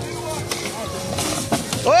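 Children and adults chattering over background music, with a sharp whack about one and a half seconds in as a stick hits a piñata. A loud, long "whoa" rises at the very end.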